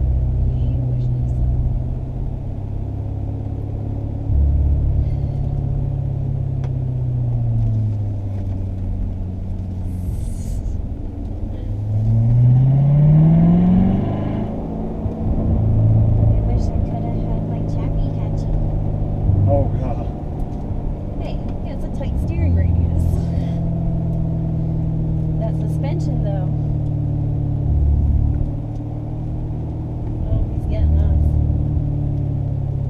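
2015 Corvette C7 Stingray Z51's V8 engine running while driven down a winding road, heard from inside the cabin. Its note sinks about seven seconds in, then climbs steeply and louder around twelve seconds as the car accelerates, and settles into a steady run for the rest.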